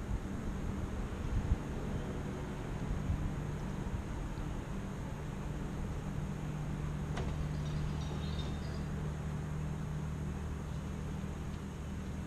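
Cruiser motorcycle engine idling steadily, with a single brief click about seven seconds in.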